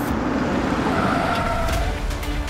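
A car driving past: a steady rush of engine and tyre noise over a low rumble.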